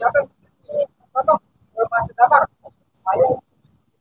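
Faint, distant voices in short snatches with gaps between: people talking and laughing some way off.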